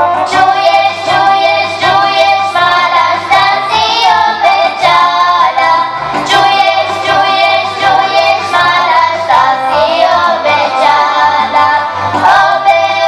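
Children's choir singing a folk song together to accordion accompaniment, with a steady alternating bass under the voices.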